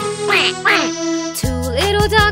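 Two falling cartoon duck quacks over the instrumental backing of a children's song. A new musical phrase with a strong bass line starts about a second and a half in.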